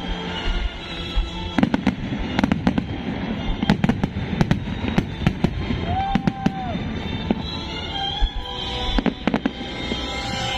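Aerial fireworks bursting, with many sharp bangs and crackles at irregular intervals, over music playing throughout.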